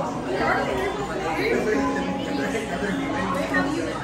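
Indistinct chatter of several customers talking at once in a busy café.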